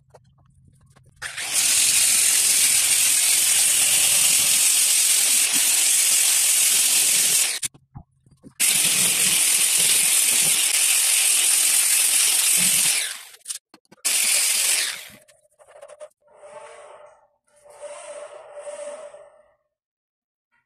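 Angle grinder fitted with a diamond polishing pad, running against the edge of a granite countertop: a loud, even hiss. It stops briefly about seven seconds in, resumes, and breaks into a few shorter bursts near the end.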